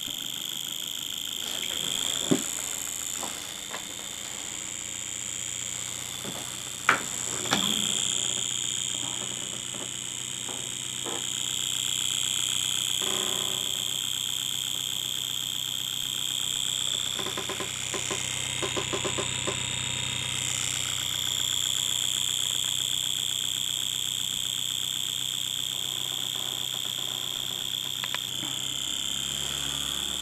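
Home-built reed switch pulse motor running on six volts: a steady pulsing buzz with a thin high tone above it. A few sharp clicks in the first eight seconds.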